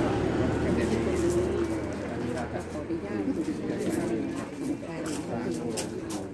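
A bird calling in the background while a man's voice carries on.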